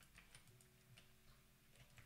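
Near silence with a few faint, irregular clicks of computer keyboard keys being typed.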